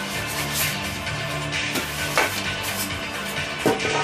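Music playing in the background, with a few short rustles of packing being handled in a cardboard box: one just before 2 seconds in, one a little after, and a louder one near the end.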